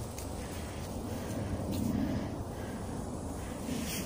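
Faint, steady low background noise outdoors with no distinct events: a quiet pause.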